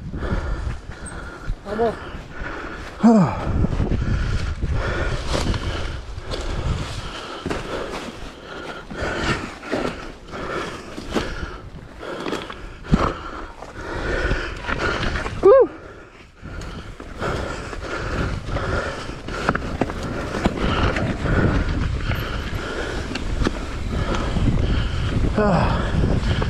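Mountain bike ridden down a rocky dirt singletrack: continuous tyre and trail noise with many knocks and clatter from the bike over rocks and roots. The rider makes a few short vocal sounds, near the start and again in the middle.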